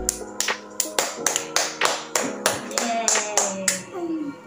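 Hands clapping in a quick, even run, about three claps a second, with music playing underneath.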